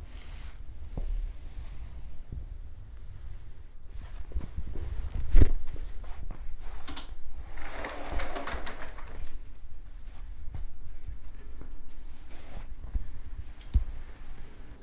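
Handling noise and soft footfalls on a concrete floor as a handheld camera is carried around, with a sharper knock about five seconds in and a brief, faint unidentified sound around eight seconds in.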